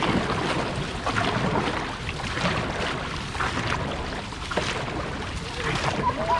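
Dragon boat crews paddling hard: paddle blades splashing into and pulling through the water in a steady rhythm of about one stroke a second, over rushing water and wind rumble on the microphone.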